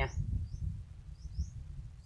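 A bird calling with short rising chirps, about three in two seconds, over a steady low rumble.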